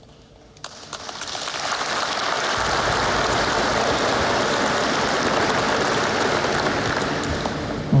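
Large audience applauding. The applause swells over the first couple of seconds, holds steady, and eases slightly near the end.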